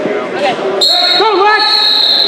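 A whistle blown in one steady high blast that starts abruptly a little under halfway through and holds, over spectators shouting in a gym.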